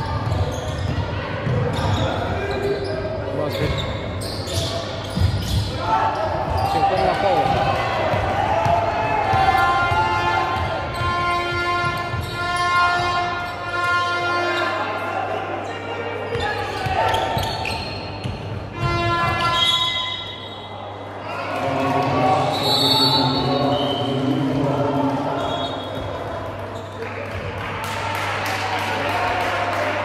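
A basketball bouncing on a hardwood gym floor during a game, with voices of players and spectators calling out in the echoing sports hall.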